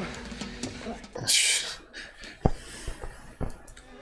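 Film soundtrack: low voices, a short loud burst of hissing just after a second in, then two sharp knocks.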